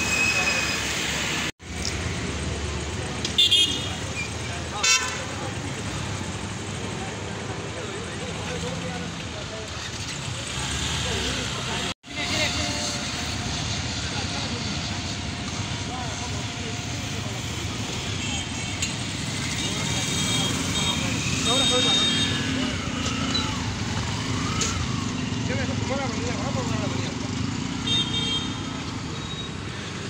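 Roadside traffic noise with background chatter, cut through by short vehicle horn toots: two loud ones a few seconds in, and more later on.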